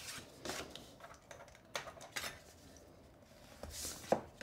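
Faint rustling and rubbing of cardstock as it is folded along its score line and creased with a bone folder, in a few short strokes.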